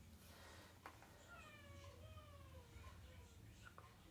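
Near silence: room tone, with one faint, long, wavering call that falls in pitch, starting about a second in and lasting about two seconds.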